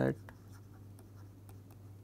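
Faint taps and scratches of a stylus on a pen tablet as a word is handwritten in digital ink, heard as a few light ticks over a steady low hum.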